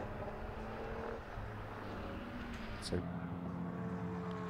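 A GT race car's engine is heard as the car approaches and passes trackside, a steady engine note under the noise of the circuit.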